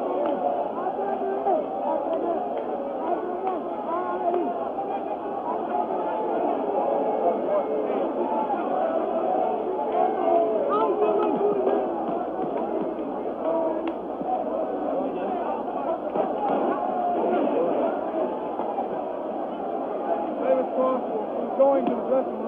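Large stadium crowd, many voices shouting and calling over one another in a steady, unbroken mass, heard through thin, narrow old broadcast audio.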